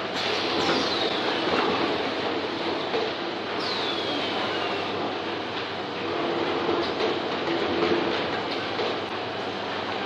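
PKC-800 two-step book case making machine running: a steady mechanical clatter and hum. Two high whines fall in pitch over about a second each, one about half a second in and one about three and a half seconds in.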